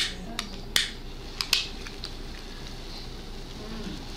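Quiet room tone with a low steady hum, broken by four or five short sharp clicks in the first second and a half.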